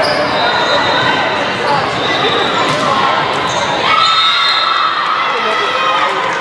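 Volleyball game sounds: the ball being struck and bouncing, a few sharp hits among a continuous background of voices.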